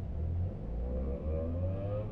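Bus engine idling with a low, steady rumble while stopped at a traffic light, as a car in the next lane accelerates away; its engine note rises in pitch from about half a second in until near the end.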